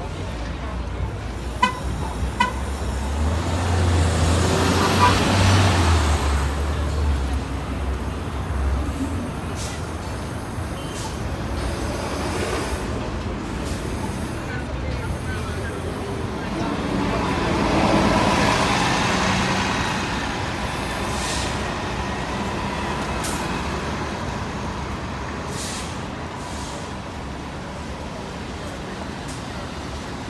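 2019 New Flyer XD40 diesel city bus pulling away and driving past. There are two short beeps about two seconds in. Then a low engine rumble swells as it accelerates, loudest a few seconds in. Around the middle the sound rises again as the bus passes close, with a steady whine that fades as it moves off.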